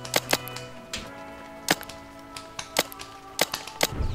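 Paintball markers firing about half a dozen sharp, irregularly spaced pops, over background music with long held tones.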